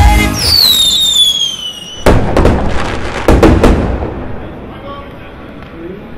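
A falling whistle glides down over about a second and a half, then a burst of loud bangs and crackles dies away over the next two seconds: a bomb-drop and explosion sound effect, played after the dance music cuts off.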